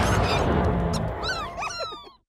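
The cartoon theme music fades out, then in the last second a rapid cluster of high, squeaky chirps and whimpers from the cartoon slug creatures, which cuts off at the end.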